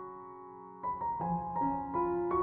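Soft background piano music: a held note fades through the first second, then new notes are played a few times a second.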